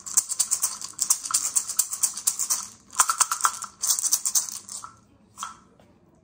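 Pair of wooden maracas shaken in quick, rapid strokes, in runs broken by short pauses. The playing thins out near the end to one last short shake about five and a half seconds in.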